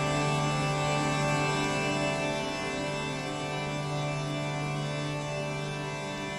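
Phonolyth Cascade reverb held in infinite feedback and fully wet: a sustained drone of several steady held tones, with slight pitch changes, fading gently toward the end.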